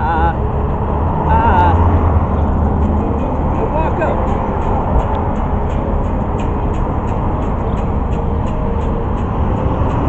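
Electric guitar strummed in a rock song, with wordless sung "ah" vocal lines near the start and about a second and a half in.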